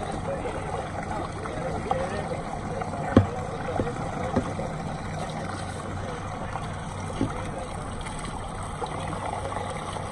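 Twin outboard motors running steadily as the boat backs down, with water washing at the stern. A single sharp knock comes about three seconds in.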